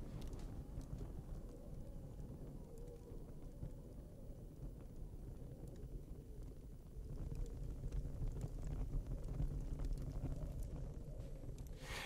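Faint low rumbling ambience with a few soft footsteps near the start; the rumble swells a little about seven seconds in.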